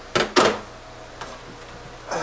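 Two sharp knocks about a quarter second apart as a plastic power-tool battery pack is handled on the workbench, followed by a faint tick.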